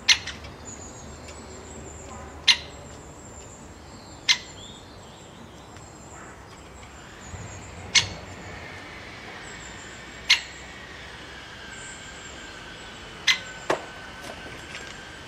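Great spotted woodpecker giving sharp single 'kik' calls, one every two seconds or so, with two in quick succession near the end. Faint high chirps of other small birds behind.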